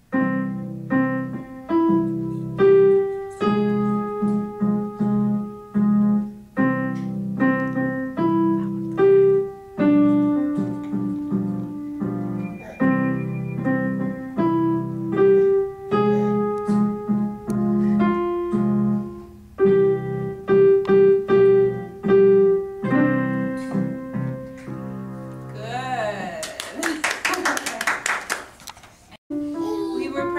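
Digital piano played by a young beginner: a simple two-handed piece, sustained low notes under a single-note melody at a steady pace. The playing stops about two seconds before the end, followed by hand clapping and a voice.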